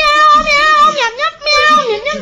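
A child's high voice singing 'meow, meow, meow' over and over in long held notes, with a short break about two-thirds of the way through.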